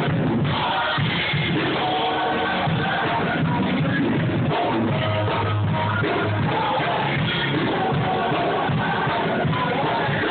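A gospel choir singing with musical accompaniment, steady and full throughout, over sustained low bass notes.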